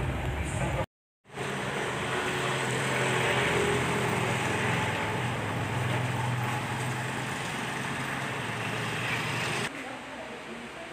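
A motor vehicle's engine running steadily under a haze of street noise, broken by a brief dropout about a second in.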